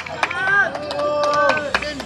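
Karate sparring: several held, high-pitched kiai shouts, each about half a second, with sharp slaps of strikes and bare feet between them.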